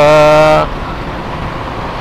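A drawn-out spoken syllable ends about half a second in, leaving steady road and wind noise from riding along a road in traffic.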